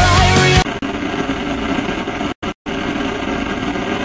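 Heavy rock with a screamed vocal cuts off suddenly about half a second in, giving way to a steady hiss of TV static. The static drops out twice, briefly, a little past the middle.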